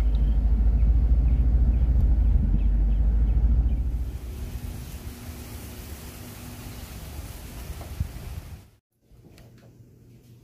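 Low rumble of road noise inside a moving car. After about four seconds it gives way to a much fainter steady hiss, which cuts out shortly before the end.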